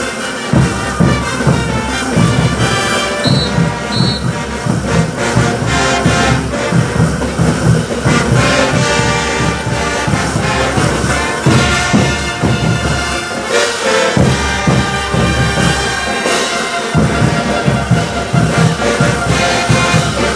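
Brass band playing caporales music: trumpets, trombones and sousaphones over a steady, pounding low beat. The bass drops out briefly twice, about 13 and 16 seconds in.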